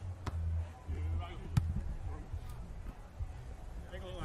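Hands striking a beach volleyball: a sharp smack just after the start as a jump serve is hit, and a louder smack about a second later, with a fainter hit near the end. Under them runs a low steady rumble, with faint distant voices.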